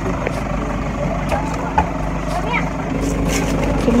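Vehicle engine idling close by, a steady low hum, with faint voices over it and one short click near the middle.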